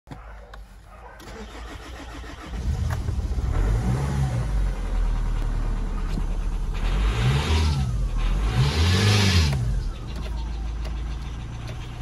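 Nissan X-Trail diesel engine, heard from inside the cabin, turning over and catching about two and a half seconds in. It is then revved up and let back down about four times before settling to idle near the end.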